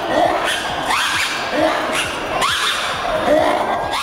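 Lemur mating calls: a series of rising calls, repeated about once a second over a rough, breathy background.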